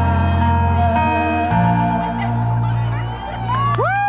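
Karaoke song ending: a backing track with steady bass notes under a woman singing held, wavering notes. Near the end a loud whoop rises and falls, with some crowd cheering.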